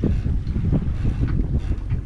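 Wind buffeting the microphone in irregular gusts, a loud low rumble, over the wash of water along a sailboat's hull under sail.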